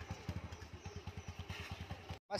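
100cc single-cylinder motorcycle engine idling: a steady, even putter of about a dozen low firing pulses a second.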